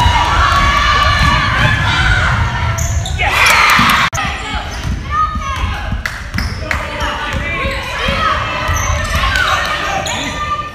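A basketball bouncing and dribbling on a hardwood gym floor, echoing in the hall, over spectators' and players' voices calling out. The voices swell briefly about three seconds in.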